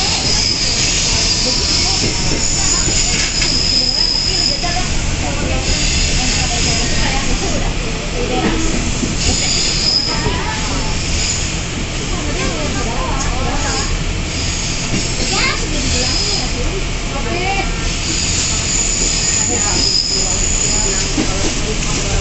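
Electric commuter train running, heard from inside the carriage: a steady low rumble with high-pitched wheel squeal that comes and goes several times, strongest in the first few seconds and again near the end.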